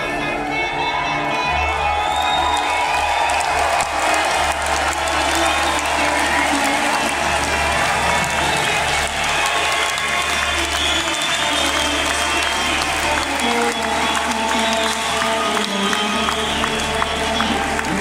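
A live rock band playing an instrumental passage with electric guitar and bass, heard from among the audience. The crowd applauds and cheers over it.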